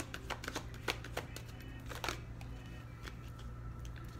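A deck of tarot cards being shuffled by hand: a quick run of card clicks and flicks through about the first two seconds, then softer handling.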